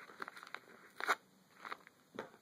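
Small paper envelope being unfolded and handled, crinkling with a few short crackles, the loudest about a second in.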